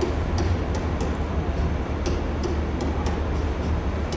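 Soundtrack of a demo video played over a hall's loudspeakers: a steady low rumble with faint, light ticks recurring a few times a second.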